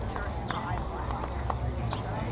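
Outdoor crowd ambience on a busy street: indistinct background chatter over a steady low rumble, with a handful of sharp, irregularly spaced clicks.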